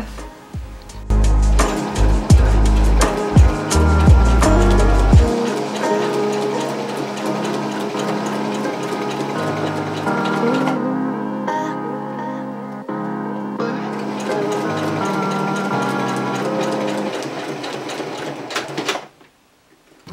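Background music, with a Singer electric sewing machine stitching underneath; the music drops out about a second before the end.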